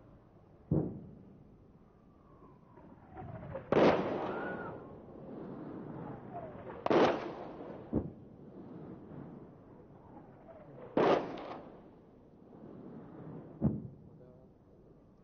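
Artillery shells exploding on a hillside about a kilometre away: six blasts over the span, three short sharp cracks near the start, after 8 seconds and near the end, and three louder, longer booms with a rolling rumble at about 4, 7 and 11 seconds in.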